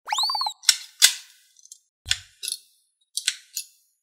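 Plastic scissors snipping through glitter slime: crisp, sharp cuts coming in pairs, about one pair a second. Just before the first cut there is a short pitched sound effect that rises and falls.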